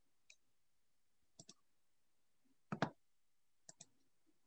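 A handful of short sharp clicks over quiet room tone. Most come in quick pairs, with the loudest pair about three seconds in.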